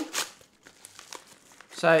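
A small white packaging bag being torn open and crinkled by hand: a short tear just after the start, then faint scattered crinkles.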